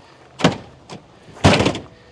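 Pickup truck tailgate being opened: a short latch click about half a second in, then a louder clunk about a second later as the tailgate drops open.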